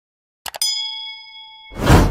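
Subscribe-button animation sound effects: two quick clicks, then a bell-like ding that rings and fades, then a loud rushing whoosh swelling up near the end.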